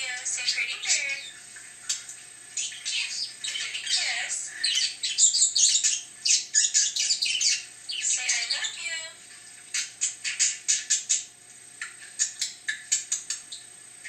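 Budgerigar warble: fast runs of chirps, clicks and squawks with brief pauses between runs.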